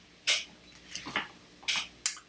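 Dropped tarot cards being gathered up: three short, sharp rustles and taps of the card stock.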